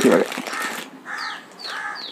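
A crow cawing three times, short harsh calls about half a second apart starting about a second in.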